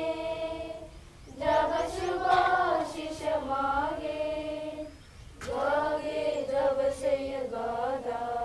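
A group of schoolgirls singing together in unison, a slow sung assembly song in long phrases with short breaks about a second in and again about five seconds in.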